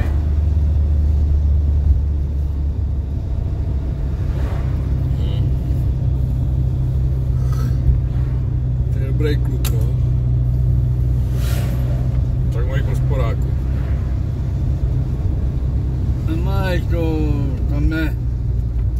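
Steady low drone of a car's engine and tyres heard from inside the cabin while driving.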